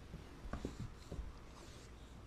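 Faint scuffling and rustling of two dogs play-wrestling on a wooden floor, with a few soft bumps about half a second and a second in.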